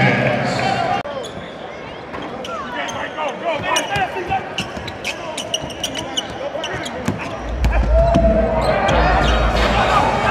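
Live basketball game sound: a basketball dribbled on a hardwood court, heard as repeated sharp bounces under voices from players and crowd. From about seven and a half seconds in, music with a heavy bass beat comes in and grows louder.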